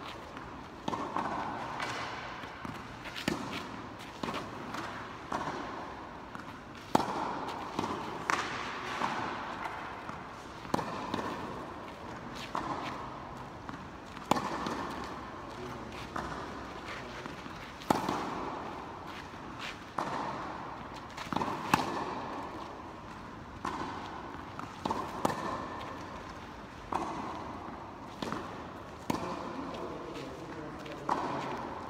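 Tennis rally: racket strikes on the ball, sharp pops every second or two, each ringing out in the echo of a large indoor court hall.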